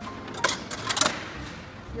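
A few sharp clicks and clacks from a Nespresso capsule-dispensing machine being worked by hand, loudest about half a second and a second in.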